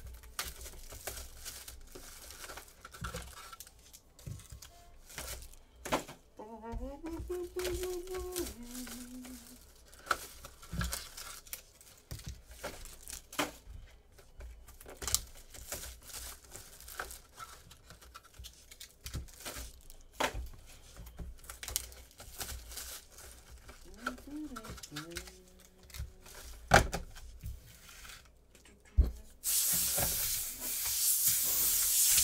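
Hands tearing and crinkling the plastic shrink wrap off a wooden trading-card box, with the wooden box and lid knocking and clicking as they are handled; the loudest knocks come near the end.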